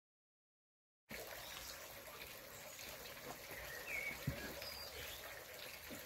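Dead silence for about a second, then faint outdoor background noise: a steady hiss with a couple of short high chirps and one soft knock near the middle.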